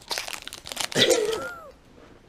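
Wrapper of a 2017 Topps Series 1 baseball card pack crinkling and tearing as it is ripped open by hand, a run of crackles for about the first second and a half before it goes quiet.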